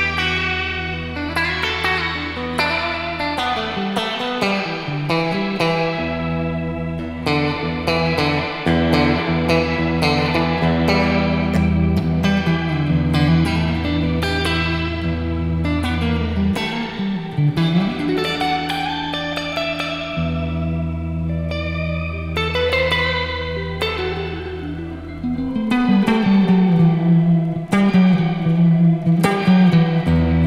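Electric guitar played through a Caline Wonderland shimmer reverb pedal and an amp simulator: sustained notes and chords ring into a long, shimmering reverb wash over a steady low note, with bent notes gliding in pitch. The playing gets louder and busier near the end.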